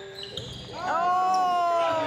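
Short squeaks from the gym court, then about a second in a spectator's long, held shout that slowly falls in pitch as a shot goes up.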